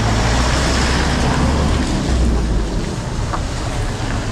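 Vehicle engines idling and creeping in stopped traffic, a steady low hum that fades about two and a half seconds in, with wind noise on the microphone.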